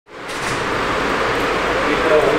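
Steady outdoor street ambience, a broad rushing noise that fades in from silence in the first fraction of a second.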